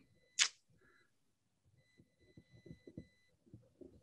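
A pause in a man's speech: one short, sharp breath noise about half a second in. Then faint soft clicks and a thin, steady high whine that comes and goes.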